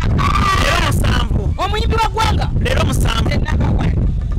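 A woman laughing loudly, then talking and laughing, over a constant low rumble.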